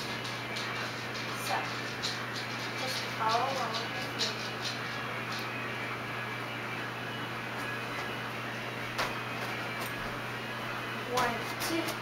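Steady low hum and room hiss, with a few faint voice sounds about three seconds in. Near the end a voice starts counting.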